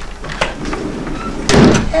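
A few short clicks, then a louder single thump about one and a half seconds in.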